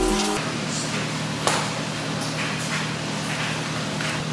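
Steady mechanical hum and hiss of a running household machine, with one light knock about one and a half seconds in.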